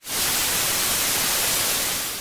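Loud TV-static hiss, a white-noise transition effect. It cuts in suddenly and holds steady, easing off a little near the end.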